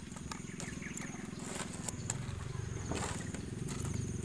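Metal tongs clicking and tapping as fried meatballs are lifted and set onto a plate, a few sharp separate clicks. Underneath runs a steady low outdoor rumble and a thin high whine.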